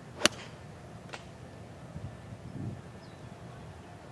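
A short iron striking a golf ball on a downward half swing that drives into the turf: one sharp, crisp click about a quarter second in, followed by a much fainter tick about a second later.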